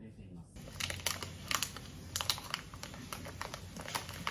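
A plastic candy pouch (Glico Ice no Mi frozen fruit-candy bag) crinkling as it is handled, in quick irregular rustles that start about a second in.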